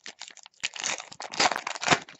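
Foil baseball card pack wrapper being crinkled and torn open by hand: a rapid run of crackles that grows louder toward the end.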